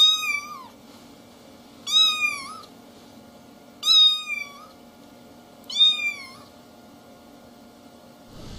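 Young kitten meowing: four high, thin mews about two seconds apart, each rising and then falling in pitch.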